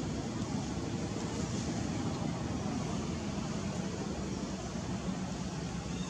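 Steady low rumble of outdoor background noise, with a fainter hiss above it and no distinct events.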